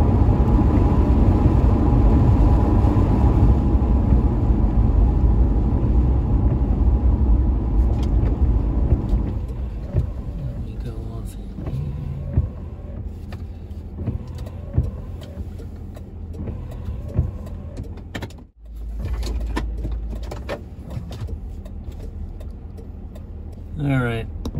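Ford Crown Victoria heard from inside the cabin: steady road and tyre noise on a wet road while driving, dropping off about nine seconds in as the car slows, leaving a quieter low engine hum. There is a brief sudden break in the sound about three-quarters of the way through.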